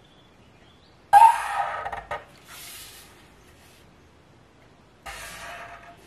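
Felt-tip marker drawing lines along a ruler on a painted board: a loud scratchy stroke with a squeak about a second in, then two quieter scratchy strokes.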